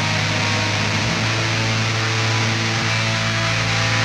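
Raw black metal band playing: heavily distorted electric guitars and bass holding chords over drums, a dense, hissy wall of sound from a 1995 four-track master.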